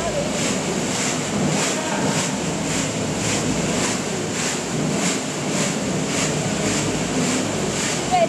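Rotating stainless-steel seasoning drum tumbling a load of crunchy corn curls: a steady rushing rattle of snacks cascading inside the drum, pulsing a little over twice a second, with a thin high whine over it.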